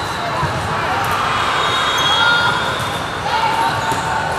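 Echoing indoor volleyball gym: spectators and players chattering and calling out all at once in a large hall, with a ball bouncing on the hardwood floor.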